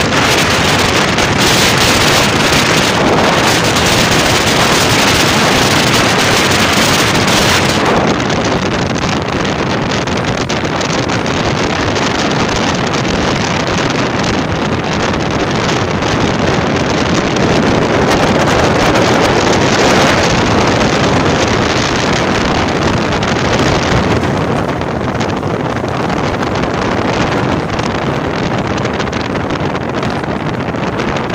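Steady, loud rush of wind and road noise from a moving vehicle, with air buffeting the phone's microphone; the hiss turns slightly duller about eight seconds in.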